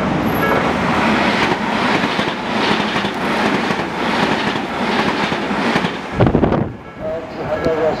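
Tobu 100 series Spacia limited express electric train passing over a level crossing at speed: a loud rush of wheel and rail noise with a faint rhythmic clatter about twice a second. It drowns out the crossing's electronic warning bell. There is a brief low rush as the last car clears about six seconds in, and the repeating warning bell is heard again near the end.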